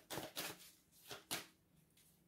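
Oracle card deck being shuffled by hand: four brief, soft flicks of the cards.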